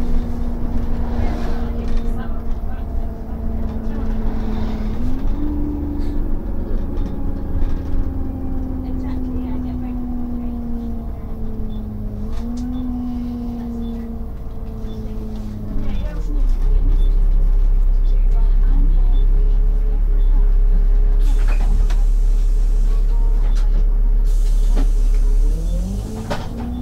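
Single-deck city bus heard from inside the saloon: the drivetrain whine climbs and drops back in steps through gear changes, then falls away as the bus slows. From about two-thirds through, a heavy, steady low engine rumble as it stands still, with two short hisses of air.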